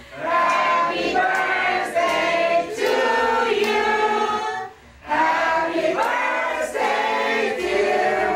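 A group of party guests, mostly women's voices, singing together in chorus. The singing breaks off briefly a little past halfway, then starts again.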